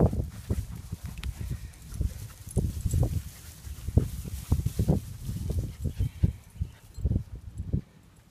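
Irregular low thumps and bumps, several a second, with some rustling: footsteps and handling noise of a hand-held phone carried by someone walking through long grass.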